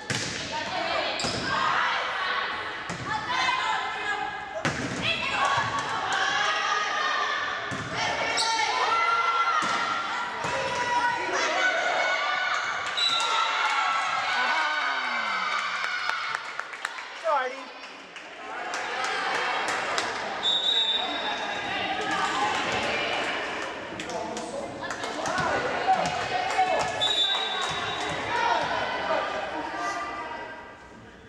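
Volleyball play in an echoing gym: a series of sharp ball hits from the serve and the rally. Players and spectators shout and cheer throughout. Three short high whistle tones sound, near the middle, about two-thirds in and near the end.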